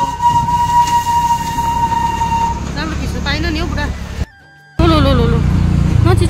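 Darjeeling Himalayan Railway B-class steam locomotive whistle held as one long steady note, stopping about two and a half seconds in, over the low rumble of the vehicle carrying the recorder. Voices follow, and the sound drops out briefly near the end.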